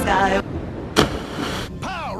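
A person hitting the sea from a cliff jump: one sudden, sharp splash about a second in, with the spray hissing on for under a second. He landed on his chest and face, a belly-flop entry.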